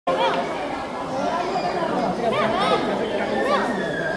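Background chatter of several people talking at once, some with high-pitched voices, with the echo of a large indoor hall.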